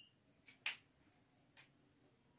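Near silence broken by a single sharp click about two-thirds of a second in, with a fainter tick or two: a marker tip tapping and touching a whiteboard as writing begins.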